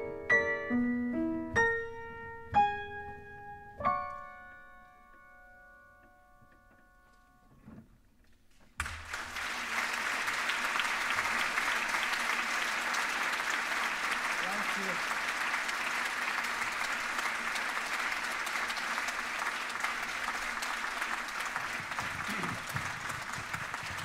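A grand piano tuned to A = 432 Hz plays a few last notes and ends on a held chord that rings and slowly fades away. About nine seconds in, an audience breaks into steady applause that goes on for about fifteen seconds.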